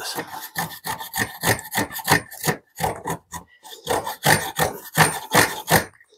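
Small shoulder plane pushed in short, quick strokes across an end-grain shoulder, a dry scraping rasp about four times a second.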